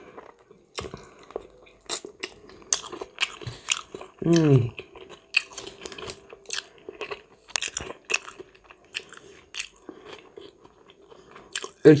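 Close-up mouth sounds of a person biting into and chewing a whole lightly salted iwashi herring: many short wet clicks and smacks. A short falling vocal sound comes about four seconds in.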